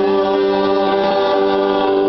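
A small mixed group of men's, women's and children's voices singing a hymn together in harmony, holding long sustained notes.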